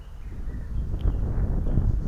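Wind buffeting an outdoor microphone, heard as a low, uneven rumble that grows through the pause, with a faint click about halfway through.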